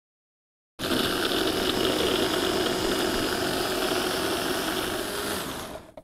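Electric food chopper, a motor unit on a glass bowl, running steadily as it purees cooked soft vegetables into a soup base. It starts abruptly about a second in and winds down near the end.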